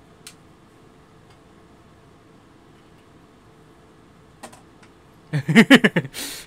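A man laughs briefly near the end, a quick run of about six 'ha' pulses, after a few faint clicks in a quiet room.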